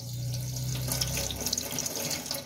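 Tap water running in a steady stream into a stainless-steel sink, splashing over an aluminium pressure-cooker lid as it is rinsed.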